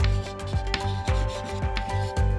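Chalk scratching on a chalkboard as a word is written out, a series of short scratchy strokes. Background music with a steady low beat runs beneath it.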